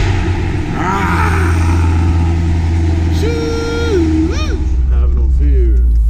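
Chevrolet Corvette C7's V8 engine running with a steady deep rumble, just after being started. A man's voice calls out briefly over it, with one long held call about three seconds in.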